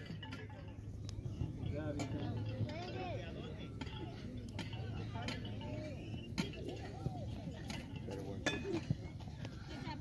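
Faint, distant voices of players and sideline spectators calling across the field, with a few sharp clicks scattered through.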